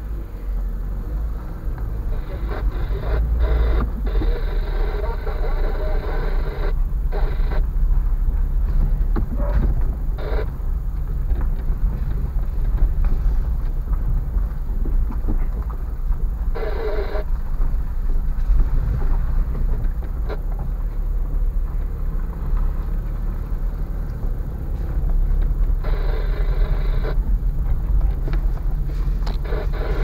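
Steady low rumble of a car's engine and tyres heard from inside the cabin on a slow drive over rough, broken concrete.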